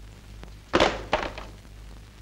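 Two sharp thuds, the second following the first by under half a second, about a second in. They sound over the steady low hum of an old film soundtrack.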